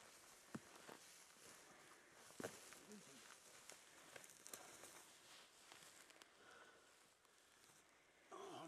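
Faint footsteps and brushing through long grass and scrub as people walk, with scattered small snaps and rustles.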